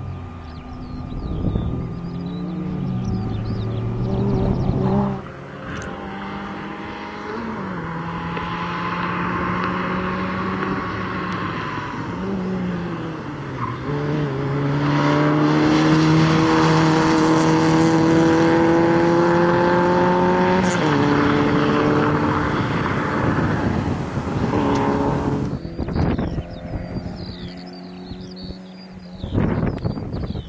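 Peugeot 106 XSi's four-cylinder petrol engine revving hard through the gears, its pitch climbing and dropping with each shift. It is loudest with a sustained high-rev stretch in the middle, and the sound changes abruptly twice where the footage cuts.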